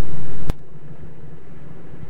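Steady low hum and hiss of an old soundtrack recorded in a moving car, broken about half a second in by a sharp click where the recording cuts, after which the background drops to a quieter steady noise.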